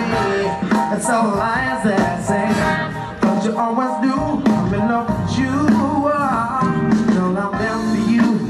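A live band plays an upbeat song, with a lead melody line bending up and down over the band's steady accompaniment.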